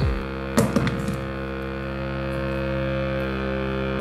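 Background music: a sustained chord held steady, with a single sharp click about half a second in.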